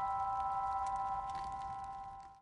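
Closing music ending on a sustained ringing chord of a few steady high notes, fading out near the end.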